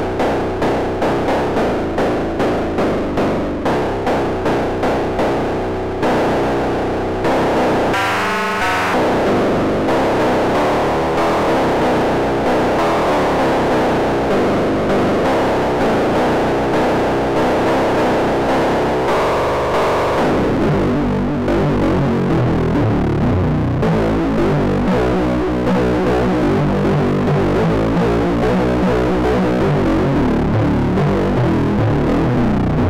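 kNoB Technology SGR1806-20 Eurorack percussion-synth module played as a synth voice: a steady run of distorted, buzzy notes, each with a sharp attack and quick decay, from three slightly detuned oscillators. The envelope is routed to the wavefolder and distortion to sharpen the attack. The tone sweeps up bright twice, about eight seconds in and again around twenty seconds in.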